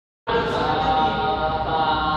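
Vocal chanting on long held notes, starting a moment in.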